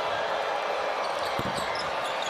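Basketball bouncing on a hardwood court under steady arena crowd noise, with a couple of dribbles about one and a half seconds in.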